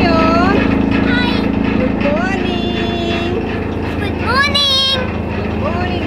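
Electric chaff cutter (fodder-cutting machine) running with a loud, steady motor hum.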